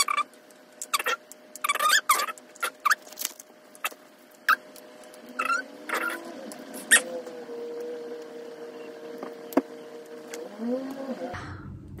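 Small plastic parts of a photocard stand being handled and fitted together. There is an irregular run of sharp clicks and short high squeaks.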